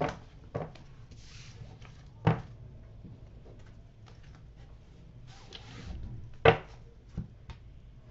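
A deck of tarot cards being shuffled by hand: soft rustling with two brief swishes. A few sharp clicks and knocks against the table come through it, the loudest about six and a half seconds in.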